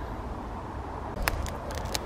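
Steady low rumble of a light breeze on the microphone, with a few faint clicks in the second half.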